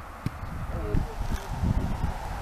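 A brief distant shout on the field about a second in, over irregular low rumbling on the camera microphone, with a sharp click just before.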